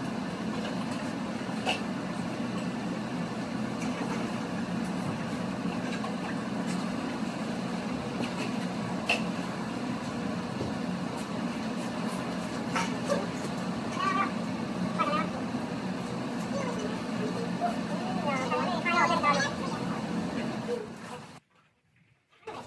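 Steady hum of barn machinery, with scattered light clicks and knocks. Indistinct voices come over it in the second half, and it all cuts off abruptly near the end.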